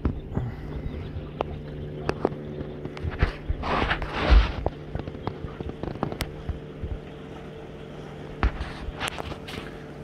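Steady low hum of a boat motor, with scattered sharp knocks and a loud rush of wind on the microphone about four seconds in.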